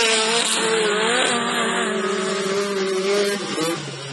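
Standard-class autocross race cars' engines revving hard, the pitch climbing and dropping again and again as the cars race over the dirt track.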